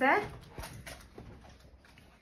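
A voice finishing a spoken word, then a quiet room with a few faint clicks.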